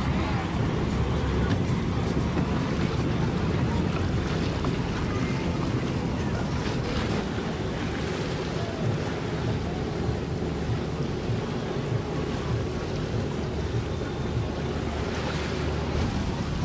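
Steady rumble of wind buffeting the microphone over open water, with the wash of water around the boats.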